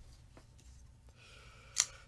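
A small knife being opened by hand: a faint tick about half a second in, then one sharp click near the end as the blade comes out.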